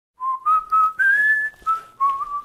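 A man whistling a short tune: a few separate notes stepping upward, then one long note that slides higher, then dropping back to a lower note.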